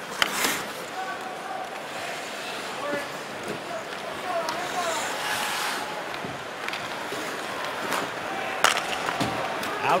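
Ice hockey play: skates scraping on the ice and sticks clicking against the puck, over a steady arena crowd murmur, with a sharp crack near the end.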